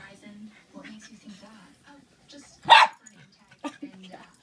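Small dogs playing, with low, wavering growls through much of the stretch and one loud, sharp bark about two-thirds of the way through.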